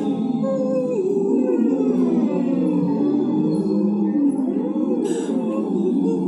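Several voices phonating through drinking straws at once, each sliding up and down through its range in overlapping pitch glides: a straw-phonation (semi-occluded vocal tract) voice warm-up.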